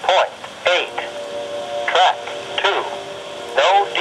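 The automated voice of a trackside equipment defect detector reading out its report over a railroad scanner radio.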